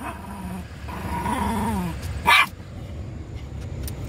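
Chihuahua growling low, then giving one sharp bark about halfway through, a bark at the cows outside.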